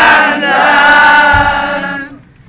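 A group of young men and women singing together, holding one long note that fades out near the end.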